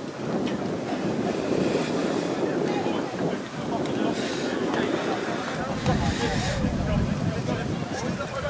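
Wind buffeting the microphone, with a low rumble that strengthens about three-quarters of the way in, under distant voices of players and spectators.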